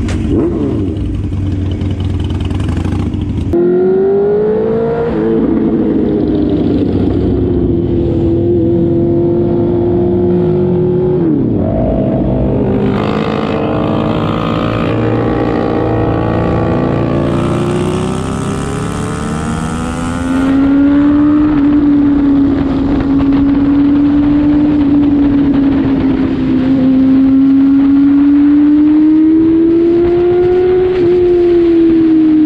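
Honda CBR650R's inline-four engine pulling away from a standstill and accelerating hard through the gears. The pitch climbs and then drops sharply at each upshift, holds steady at cruising speed, and rises again near the end. A low idling rumble fills the first few seconds.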